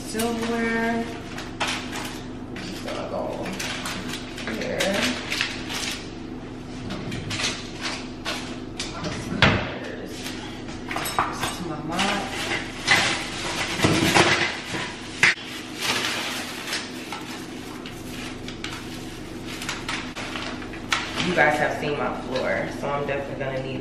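Plastic and paper packaging rustling and crinkling while things are unwrapped, with scattered clinks and knocks of dishes and kitchenware. A short bit of voice is heard at the start and again near the end.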